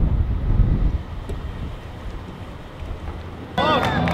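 Wind buffeting the microphone on an open sailing yacht: a low rumble, loudest in the first second, then quieter. Near the end it cuts suddenly to a louder crowd cheering on the dock.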